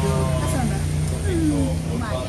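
Voices talking over a steady low motor hum that holds for about two seconds.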